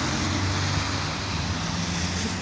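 Road traffic: a city bus passing close on a wet street, its steady low engine drone under a broad tyre hiss.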